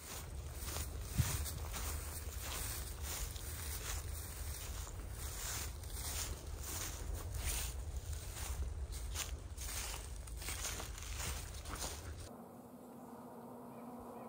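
Footsteps in dry fallen leaves, a step every half second or so, over a low rumble from a camera being carried. The steps stop about twelve seconds in, leaving quiet woods.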